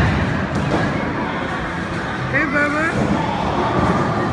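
Busy bowling alley: a steady rumble of balls on the lanes and people talking. A voice calls out about two and a half seconds in.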